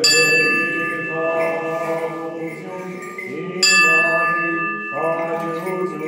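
A bell struck twice, about three and a half seconds apart, each strike ringing on with several clear tones, over continuous liturgical chanting.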